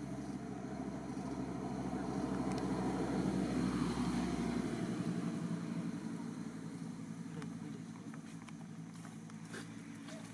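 A motor vehicle's engine humming, growing louder to a peak a few seconds in and then fading away as it passes.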